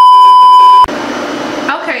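Loud, steady test-pattern beep of the kind played over TV colour bars. It lasts about a second and cuts off suddenly into a hiss of static. A woman's voice starts near the end.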